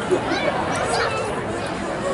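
Spectators' chatter at a ballpark: several voices talking over one another, none clearly in front, with one brief louder moment just after the start.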